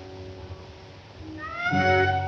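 Instrumental accompaniment of a 1930 cabaret song between sung lines: quiet held chords, then about a second and a half in a note slides upward and swells into a loud sustained tone.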